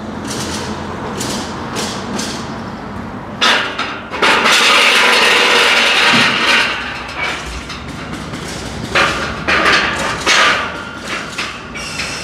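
Galvanised steel palisade gate being pushed shut: metal knocks and rattles, with a louder scraping stretch lasting a few seconds about a third of the way in.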